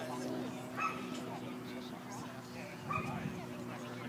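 A dog giving two short, high yips, one about a second in and another just before the three-second mark, with people's voices in the background.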